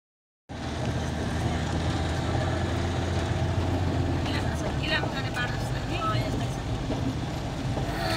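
Car engine and tyre noise heard from inside the cabin while driving on a paved road, a steady low drone whose pitch shifts about halfway through.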